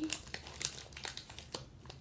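Foil Doritos chip bag crinkling in irregular crackles as a hand reaches in for chips.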